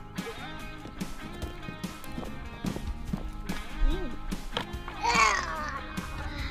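Background music with steady held tones and a beat, and a short high-pitched voice-like call about five seconds in.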